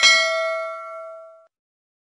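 A single bell-ding sound effect from a subscribe-button animation, struck once and ringing out until it fades away after about a second and a half.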